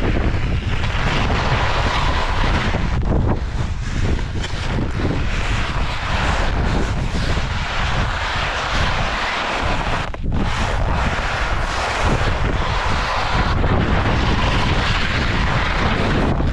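Wind rushing over the microphone during a fast ski descent, with the continuous hiss and scrape of skis on packed snow. The rush drops briefly about ten seconds in.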